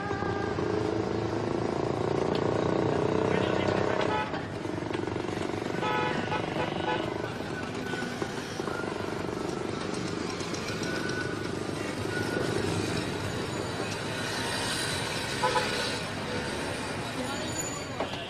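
Busy street ambience: traffic running past and indistinct voices of people in the street.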